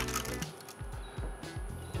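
Quiet background music with soft low notes.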